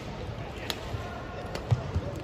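Badminton rally: a racket strikes the shuttlecock about a third of the way in, and players' feet thud on the court, the loudest thuds near the end.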